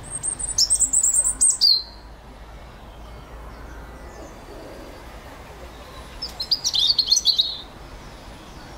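A small bird singing two short phrases of quick high-pitched notes, one at the start and one about six seconds in, each ending in a lower trill.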